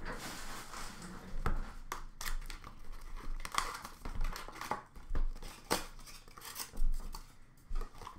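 An Upper Deck Trilogy hockey card box and its packs being handled and opened. Irregular crinkling, tearing and short sharp clicks of wrapper and cardboard come in quick uneven bursts.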